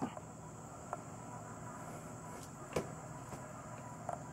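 A few faint knocks of footsteps on old wooden deck boards, taken slowly, three light steps over a quiet background.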